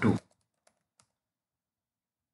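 A few faint computer keyboard keystrokes, about three in the first second, then dead silence.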